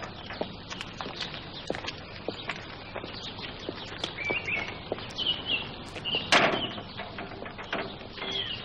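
Small birds chirping in short high calls, more often in the second half, over quiet outdoor ambience with soft scattered ticks. A brief, louder rush of noise about six seconds in.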